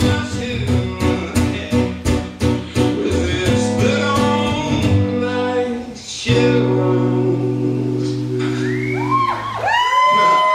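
Guitar strummed in a steady rhythm, then a final chord struck about six seconds in and left ringing. Near the end, rising-and-falling whistles and whoops from the audience begin.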